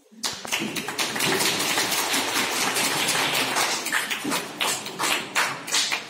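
A small group of people clapping: dense applause that starts abruptly and thins to scattered single claps toward the end.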